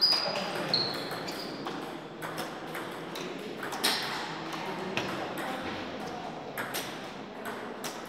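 Table tennis ball in a rally, struck by paddles and bouncing on the table in short, high-pitched pings that stop about two seconds in. After that come a few scattered clicks and knocks, with voices echoing in a large hall.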